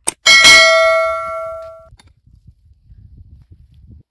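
A metal digging tool strikes stony ground: a short knock, then a loud hit whose metal rings out with several clear tones, fading over about a second and a half. Faint scraping follows.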